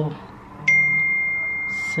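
A single clear metallic ring about two-thirds of a second in: one steady high tone that starts sharply and fades slowly, from a gold cuff bracelet knocked as it is handled.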